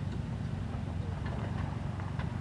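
Suzuki Jimny JA11's small three-cylinder turbo engine running steadily at low revs as the truck crawls over ruts, with a few faint clicks.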